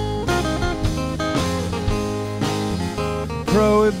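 A band plays an instrumental passage in a bluesy acoustic style: strummed acoustic guitars over a drum kit, with a melody line of bending notes on top.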